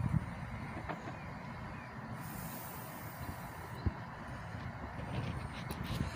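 Faint, steady outdoor background rumble and hiss, with one soft thump about four seconds in.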